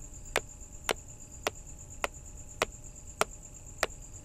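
Evenly spaced sharp ticks, a little under two a second, over the steady high trill of night insects such as crickets.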